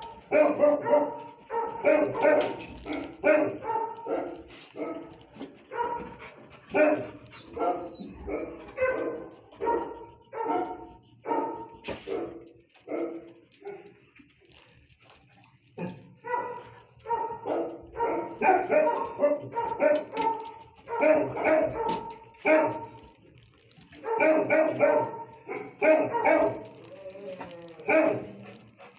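Dog barking repeatedly in short runs, with a lull of a couple of seconds around the middle.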